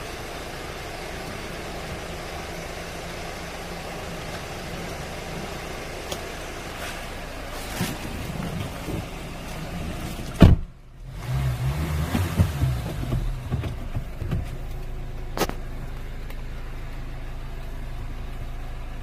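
Hyundai Tucson's engine starting with a sharp click about ten seconds in, running unevenly for a few seconds, then settling to a steady idle, heard from inside the cabin. Before the start there is only a steady low cabin hum.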